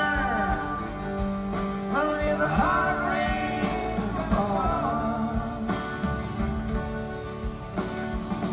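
Live band playing the instrumental passage between verses of a folk-rock song, with guitars over bass and drums and a lead line bending in pitch.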